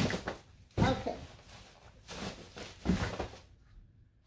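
Boxed cosmetic and fragrance packages being handled and moved off a table into a bag: several short bursts of rustling and knocking.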